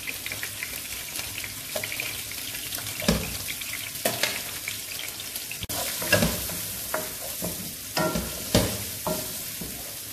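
Chopped onion, garlic and chilli sizzling in hot oil in a non-stick pan, with a steady hiss. From about three seconds in, a wooden spoon stirs and knocks against the pan several times.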